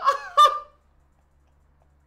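A man laughing hard: two loud, high-pitched bursts of laughter in the first half-second, then it stops.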